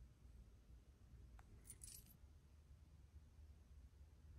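Near silence, with one faint, brief metallic clink a little under two seconds in: the links of silver chain bracelets knocking together on a moving wrist.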